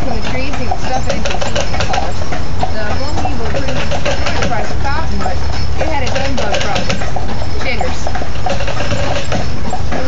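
A man's voice talking steadily over a constant low rumble, recorded loud and rough.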